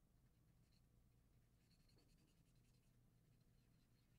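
Near silence, with the faint scratch of a felt-tip marker coloring in on paper.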